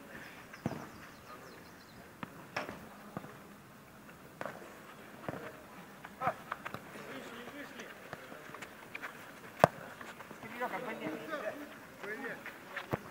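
A football being kicked on a turf pitch: several separate sharp thuds scattered through, the loudest about ten seconds in. Players' voices call out near the end.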